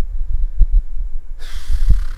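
Deep, uneven rumbling thumps, with a breathy hiss near the end.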